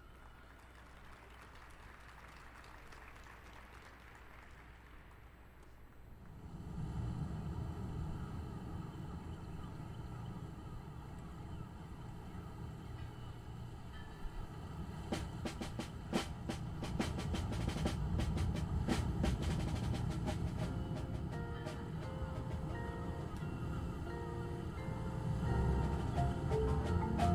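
Opening of a drum and bugle corps field show. It starts quiet, then about six seconds in a loud low rumbling swell sets in. From about fifteen seconds it is joined by sharp percussion hits, and near the end by short pitched mallet-percussion notes.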